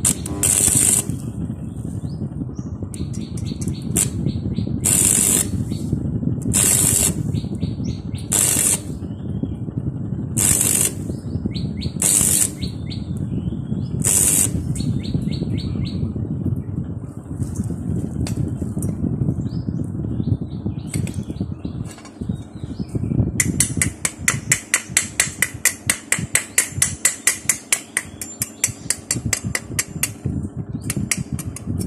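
Stick-welding arc crackling steadily as a stainless-steel electrode builds up weld on a motorcycle kick-start lever. About three-quarters of the way through it gives way to a fast, even tapping of about four strikes a second: a hammer chipping slag off the fresh weld.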